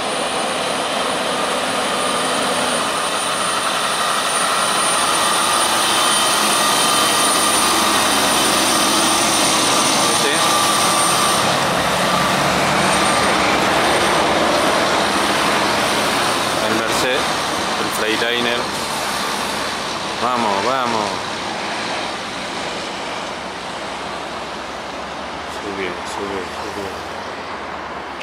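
Freightliner semi-truck pulling a dump trailer passing close by, its diesel engine and tyres building to a steady roar with a high whine over it, loudest as it goes by around ten seconds in, then fading away.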